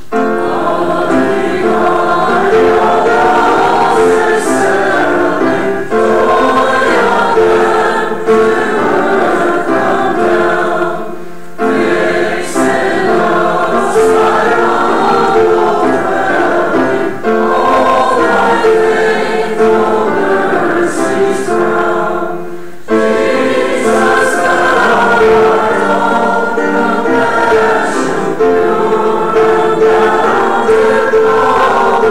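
Church choir and congregation singing a hymn together, line by line, with short breaks for breath about every five to six seconds.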